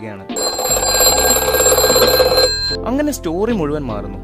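A classic telephone bell ringing in one long, loud ring of about two and a half seconds that starts just after the beginning and cuts off suddenly.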